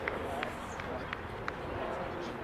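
Faint, indistinct voices of spectators and players across an open football ground, over steady outdoor background noise. Several sharp clicks come about a third of a second apart.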